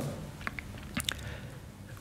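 A pause in the talk: quiet room tone with a few faint short clicks, about half a second and a second in.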